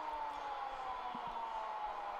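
Faint steady background noise with a few faint tones sliding slowly down in pitch, and one small tick about a second in.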